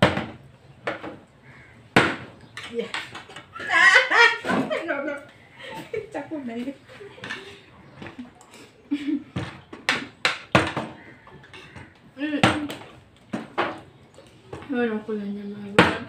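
A plastic water bottle being flipped and landing on a tabletop, a string of sharp knocks spaced a second or more apart, mixed with a spoon clinking on a plate.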